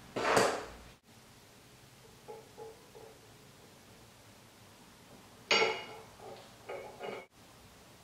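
Small steel driveshaft parts, a U-joint cross and its bearing caps, clinking against the yoke as the U-joint is fitted. There is a loud clatter at the very start, a few faint taps, then a burst of short ringing metallic clinks about five and a half seconds in.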